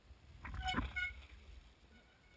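A mountain bike crashing in snow about half a second in: a rush and rumble of tyres and body hitting the snow, with sharp knocks and a brief high-pitched squeal.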